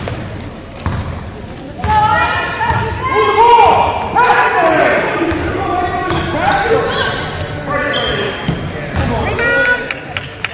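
A basketball being dribbled on a hardwood gym floor, with loud voices calling out over it from about two seconds in, echoing in the large gym.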